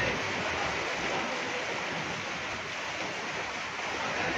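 Heavy rain falling steadily.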